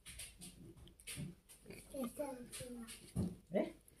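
Quiet voice sounds: soft breathy murmuring, then a few short vocal sounds sliding down in pitch about halfway through.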